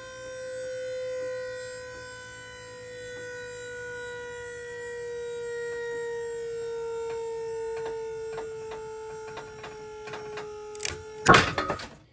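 Pull-test rig loading a knotted dynamic climbing rope to failure. A steady motor whine sinks slowly in pitch, with crackling ticks from the tightening rope coming faster and faster, then a loud snap near the end as the rope breaks.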